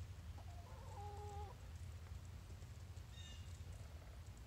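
Faint chicken call: a hen gives a drawn-out, pitched call lasting about a second, and a short higher call follows about three seconds in, over a low steady rumble.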